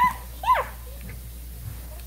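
A single short, high-pitched vocal squeal about half a second in, rising and then falling in pitch, followed by a quiet room.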